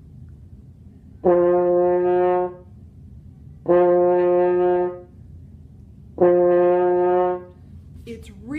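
French horn playing its low open C (no valves pressed, sounding the F below middle C) three times, each note held steady for about a second with a short gap between. The jaw is dropped on a 'daw' syllable to help reach the low note.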